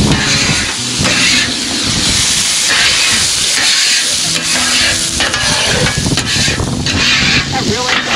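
Water squirted from a squeeze bottle sizzling and steaming on a hot steel griddle top, with a metal scraper scraping across the plate to lift off cooked-on residue. A steady, loud hiss that swells and eases as more water hits the hot steel.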